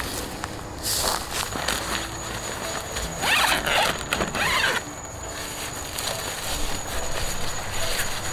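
Nylon tent rainfly being handled and pulled over a dome tent: fabric rustling, with a loud rasping zip about three seconds in that lasts a second and a half.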